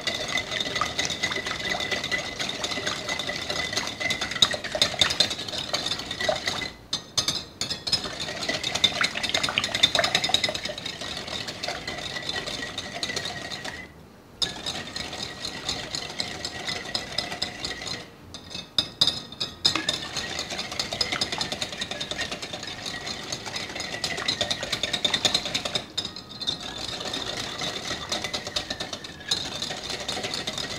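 Stainless wire whisk beating a thin mix of oil, milk and sugar in a glass bowl to dissolve the sugar: a fast, continuous rattle and clink of the wires against the glass, stopping briefly a few times.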